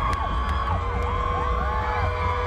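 Concert crowd cheering, with whoops and whistles rising and falling over a dense rumble of voices.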